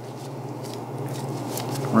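A steady low hum, with soft, quiet handling noise as a knife tip is worked along the seam of a raw sirloin tip on a steel table.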